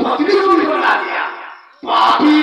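Loud theatrical shouting and yelling by male actors over stage microphones. It fades out about a second and a half in, then breaks in again with a sudden loud yell just before the end.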